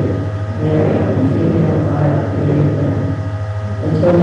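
A man singing a slow melody with held notes into a microphone, with piano accompaniment, over a steady low hum.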